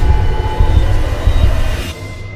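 Dark film-trailer score: a loud, deep rumbling drone under sustained high tones, with a hit at the start. It drops away just before the end.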